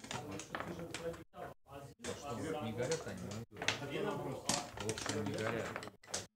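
Voices talking, broken by sharp clicks and clatter of dice and checkers on a backgammon board.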